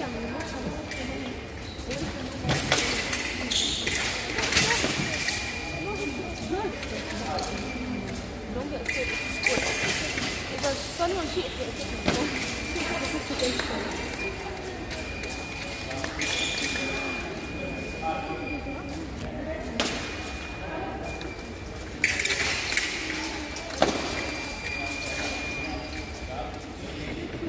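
Foil fencing bout in a large hall: sharp metallic clicks and thumps of blades meeting and feet stamping on the piste come every few seconds, with several short, steady high electronic tones from the scoring apparatus and voices chattering in the background.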